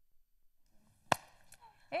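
A single sharp click about a second in, the loudest thing heard, followed by a fainter tick, with near silence around them.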